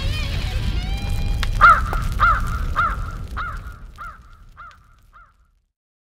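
A crow cawing about eight times in even succession, each caw fainter than the last until it fades out near the end, over the dying tail of guitar music.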